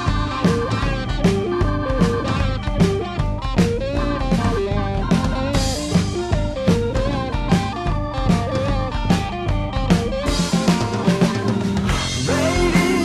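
Live psychedelic rock band playing an instrumental passage with no singing: electric guitars, bass and drum kit, with a wavering melodic line over a steady drum beat.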